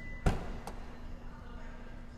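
Power trunk of a 2021 Lexus ES 300h unlatching with one sharp click about a quarter second in, then a lighter click, as the lid begins to rise.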